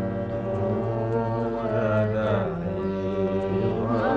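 Indian devotional song: a voice sings a melodic phrase that glides up and down about halfway through, over a steady held drone accompaniment.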